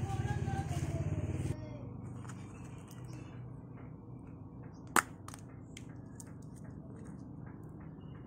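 Small plastic tub and powder being handled by hand: quiet small clicks, with one sharp click about five seconds in. A low steady hum stops suddenly about a second and a half in.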